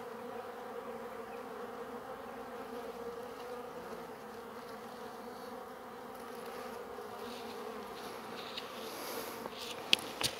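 Steady buzzing hum of a small honeybee swarm clustered on the ground around its queen, which the beekeeper says is being harassed by ants. A single sharp click comes just before the end.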